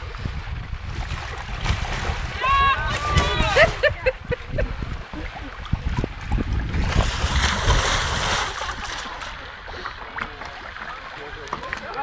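Water splashing and sloshing around an inflatable water-walking ball as a person scrambles inside it on a pond, strongest about seven to eight seconds in, with wind rumbling on the microphone.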